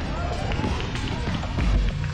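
People's voices calling out across an outdoor ball field, over general outdoor noise.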